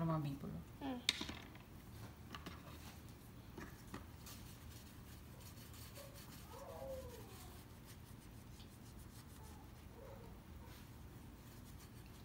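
Faint, scattered rubbing and scratching of a child's hand and marker on the laminated page of a write-and-wipe activity book. A soft voice murmurs briefly about halfway through.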